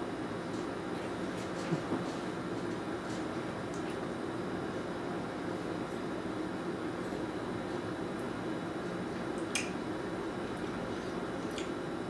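Quiet, steady room hum with a few faint clicks from a spoon and mouth as a spoonful of yogurt is eaten.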